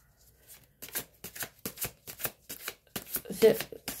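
A tarot deck being shuffled by hand: a quick, uneven run of short card slaps and flicks starting about a second in. A woman's voice starts just before the end.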